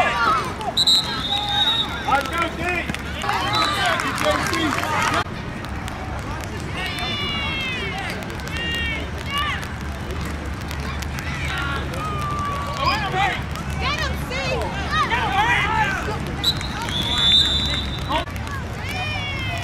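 Coaches and spectators shouting from the sideline of a youth football game, with a referee's whistle blown briefly about a second in and again near the end.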